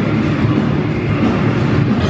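A band's song playing loud: electric guitars, bass and drums in a dense, steady mix.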